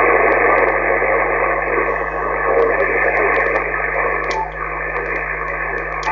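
Steady static hiss from a radio transceiver's speaker, tuned to 27.515 MHz on receive with no readable station coming through. It is a muffled hiss with faint scattered clicks, easing slightly after about four seconds.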